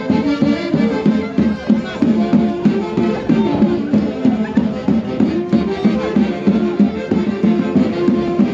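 Andean Santiago fiesta dance music played by an orquesta: a lively melody of short repeated notes over a steady dance beat.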